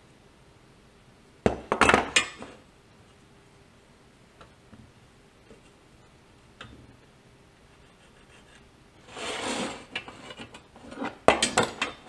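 Metal measuring tools and a steel rule being handled on a wooden workbench: a quick cluster of clacks about a second and a half in, a brief scraping slide around nine seconds, then more clacks near the end.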